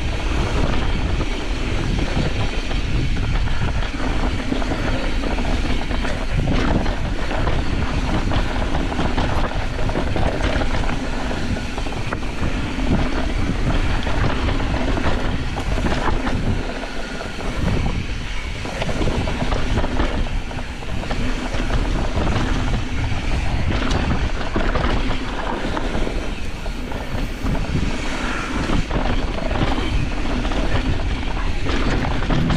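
Mountain bike riding fast down a dirt singletrack: steady wind rushing over the microphone, with knobby tyres rolling on dirt and the bike's chain and frame rattling over bumps.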